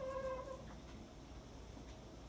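Dry-erase marker squeaking on a whiteboard: one short squeal of about half a second right at the start, then a few faint ticks of the marker.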